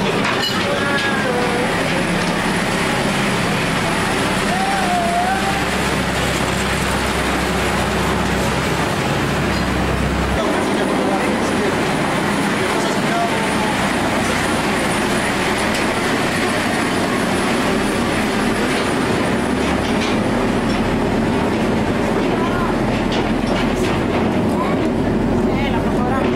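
Small mine train running steadily along narrow-gauge rails through a rock tunnel, with continuous running noise from its wheels and track.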